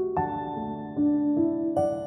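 Slow, soft piano lullaby: a few single melody notes, each left to ring, over a held lower note.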